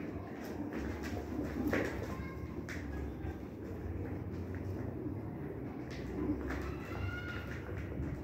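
Flock of domestic pigeons feeding at a seed bowl: many quick clicks of beaks pecking grain, with low pigeon cooing underneath and a brief higher call near the end.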